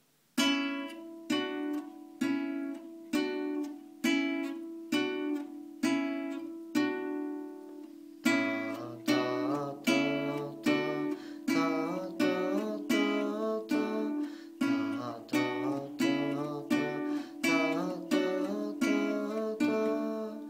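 Nylon-string classical guitar playing a light chord accompaniment: single strums about once a second for the first eight seconds, then a busier picked pattern with a moving bass line.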